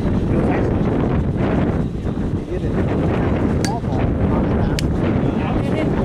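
Wind buffeting the camera microphone, a loud, steady low rumble, with two short sharp clicks about three and a half and five seconds in.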